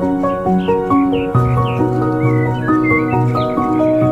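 Calm instrumental background music with a slow melody, over which capuchin monkeys give a run of short, rising, squeaky chirps, about two a second.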